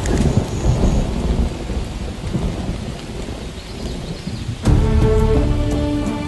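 Rain falling with a low rolling rumble of thunder that slowly fades. Near the end, music with sustained notes comes in over the rain.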